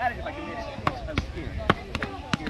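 Padded foam boffer swords striking shields: four sharp hits, the first about a second in and the rest close together toward the end, with voices talking in the background.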